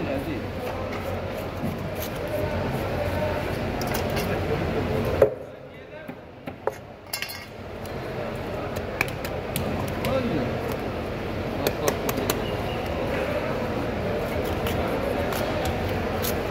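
Knife clicking and knocking against a wooden cutting board as a large trevally is cut, scattered short taps over a steady background of voices and bustle. The background drops away briefly about five seconds in.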